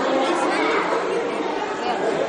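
Indistinct chatter of several voices talking at once, with no single voice standing out.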